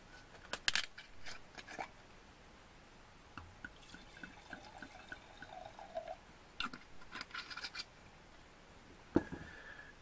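Grüner Veltliner white wine poured from a bottle into a stemmed wine glass, glugging about four times a second for a couple of seconds, between sharp clicks and clinks of bottle and glass being handled.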